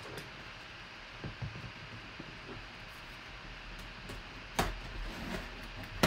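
A cardboard box being handled and turned over by hand, with soft rubbing and a few light knocks, and one sharper knock about four and a half seconds in.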